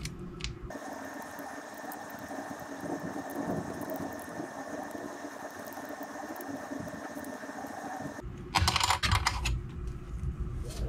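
Small plastic parts and a metal Allen key being handled: light clicking and scraping as a screw is worked into a 3D-printed plastic bed pull, then a louder rattling clatter lasting about a second near the end.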